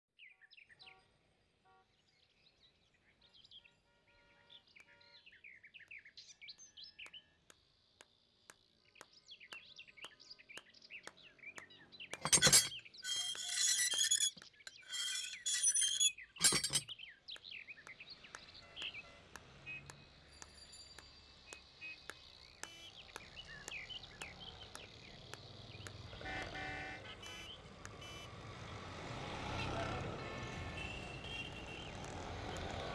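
Birds chirping, then a few seconds of loud metallic rattling of an iron gate about halfway through. Street traffic noise rises toward the end.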